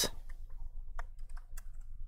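Typing on a laptop keyboard: several separate light key clicks at an uneven pace, typing out a word.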